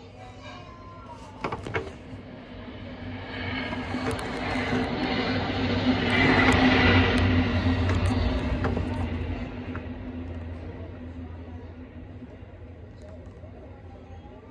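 MBTA commuter rail train passing: rumble and wheel noise build, peak about six to eight seconds in, then fade as the train moves off, with a steady low diesel engine drone under it. Two sharp clicks come just before the train noise builds.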